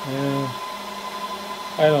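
Dell PowerEdge R730 server's cooling fans running with a steady whir and a constant high tone. Brief hesitant vocal sounds come near the start and at the end.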